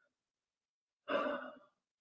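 Silence, then about a second in a man's single short audible sigh, an exhale of about half a second.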